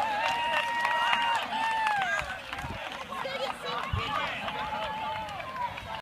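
A group of young women's voices calling out together in long held shouts that fall away at the end, like a team chant, over crowd chatter.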